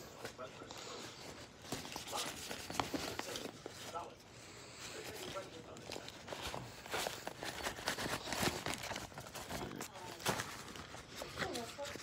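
Rummaging through medical supplies: gauze and foil-and-plastic dressing packs rustling and crinkling as they are pushed aside, with scattered light clicks and knocks of gear being moved.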